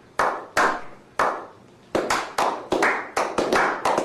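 Slow clap from a small group: single hand claps spaced well apart at first, then quickening into faster clapping over the last two seconds.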